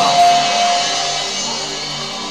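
Soft background music from a live band: sustained chords under one clear held note that ends after about a second, the whole slowly getting quieter.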